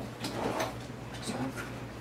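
Kitchen drawer being pulled open and rummaged in: a few faint knocks and rustles.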